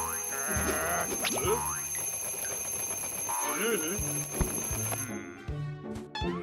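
Cartoon twin-bell alarm clock ringing continuously, then cutting off suddenly about five seconds in, over cartoon background music and brief gliding character vocal sounds.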